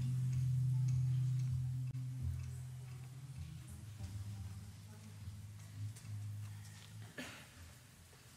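Low, steady hum from the stage's amplified instruments, slowly fading away, with a few faint clicks and rustles and a short noisy burst near the end.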